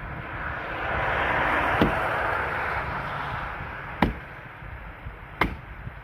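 A small axe chopping into a dead log: three sharp chops, about two seconds apart. A broad rushing noise swells and fades behind the first two.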